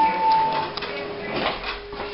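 Elevator chime: a single steady electronic tone that stops under a second in, followed by a faint steady lower hum and a few light clicks.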